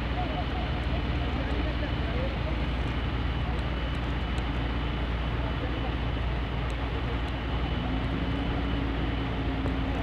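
Steady rushing noise of a wide, fast-flowing flash flood, with a deep rumble underneath and faint voices in the first couple of seconds.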